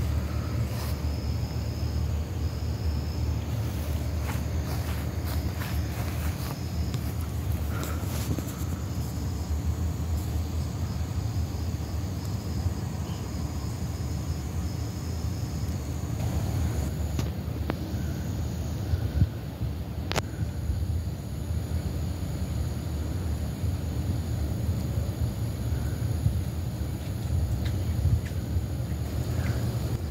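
Steady low rumble of outdoor background noise at night, with a few faint clicks.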